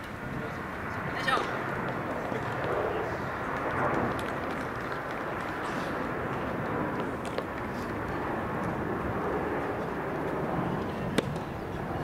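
Indistinct chatter of voices in the open air, with a brief higher call a little over a second in and a single sharp tap near the end.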